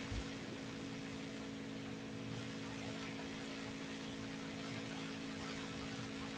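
Room tone of a meeting hall: a steady low electrical hum over faint hiss, with one soft low thump just after the start.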